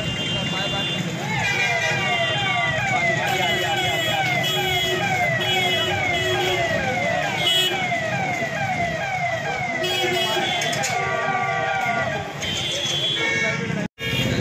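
Electronic emergency-vehicle siren wailing in quick repeated falling sweeps, a few per second. It starts about a second in and continues until near the end, over street traffic noise.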